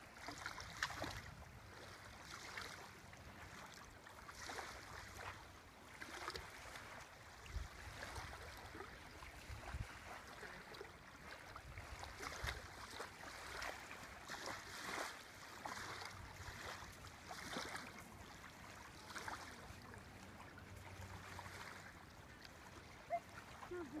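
Faint shoreline ambience: small waves lapping softly at a sandy water's edge, with occasional low rumbles of wind on the microphone.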